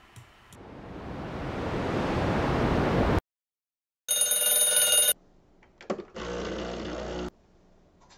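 A rising whoosh of noise that cuts off suddenly, then, after a second of silence, a mechanical alarm clock bell ringing for about a second. Later, a couple of clicks and a short steady machine whir.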